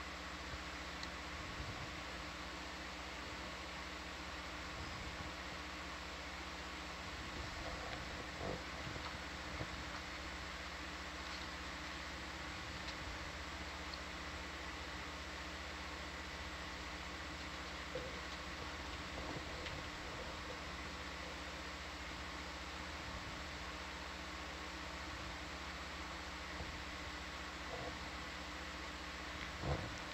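Steady electrical hum and hiss on the control-room audio feed, with a few faint brief sounds scattered through.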